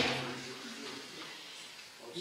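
Quiet room tone in a pause between spoken lines, with the end of a word fading out in the first half second.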